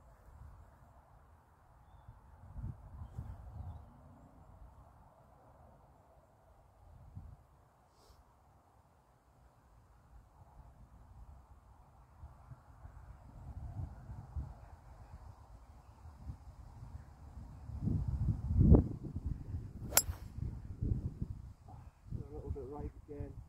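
A golf club striking a ball on the fairway: one sharp click about two seconds before the end. It comes a second after a louder low thump, over a faint low rumble.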